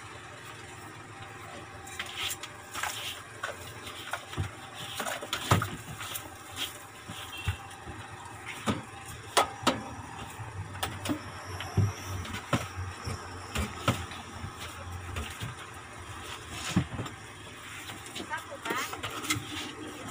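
Irregular knocks, clacks and scrapes of a long-handled mop being worked over the floor of a bus driver's cab.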